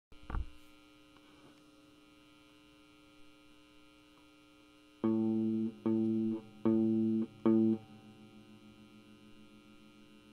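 Steady electrical mains hum with a sharp pop near the start. About halfway through, four sustained notes at the same pitch sound in an even rhythm, each lasting under a second, from an amplified musical instrument.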